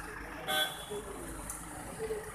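One short vehicle horn toot about half a second in, over background crowd chatter.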